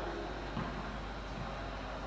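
Steady background noise of a large sports hall, with no distinct single event standing out.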